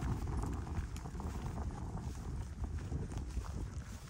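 Footsteps walking on dry, grassy turf, with irregular light clicks over a low rumble that slowly fades.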